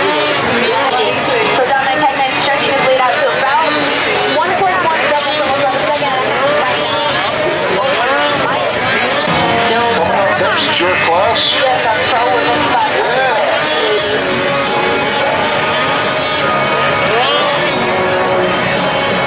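Several two-stroke race snowmobiles on a snocross track, their engines repeatedly revving up and falling away in pitch as they race, heard through public-address commentary and music.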